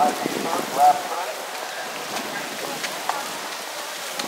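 Steady wind noise on the microphone, with a person's voice briefly in the first second.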